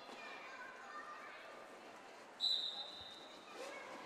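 Referee's whistle, one steady blast of about a second, starting a roller derby jam. It sounds over a faint murmur of voices in a large hall.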